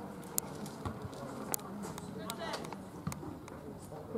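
Faint calls and shouts of players across an outdoor football pitch over a steady background hiss, with a few sharp clicks.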